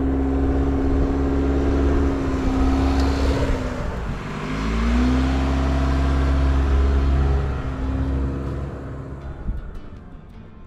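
Toyota RAV4's engine pulling under load through soft, deep sand, with its wheels spinning. The revs drop about four seconds in and rise again a second later, and the sound fades as the vehicle drives off near the end.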